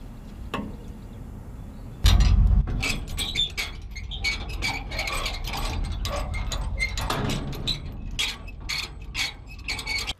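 A loud thump about two seconds in, then a trailer tongue jack being hand-cranked, its gears giving a run of quick, uneven metallic clicks.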